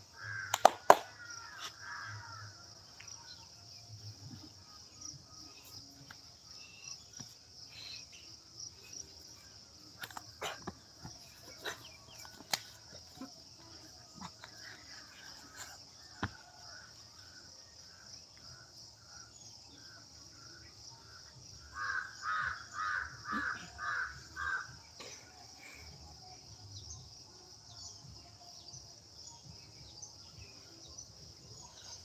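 A bird calls over and over, faintly at first and then in a loud run of about seven calls, two or three a second, near the end, over a steady high insect drone. A few sharp knocks come through, the loudest about a second in.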